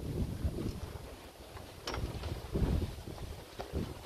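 Wind buffeting the microphone in gusts, with a few short knocks of a metal bicycle frame against a hitch-mounted bike carrier as the bike is lifted onto it, the clearest about two seconds in.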